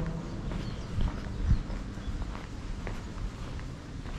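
Footsteps of someone walking on a paved path, a run of uneven low thuds, the heaviest about one and a half seconds in.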